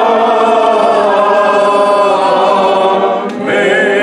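Church choir singing long held chords, moving to a new chord about three and a half seconds in.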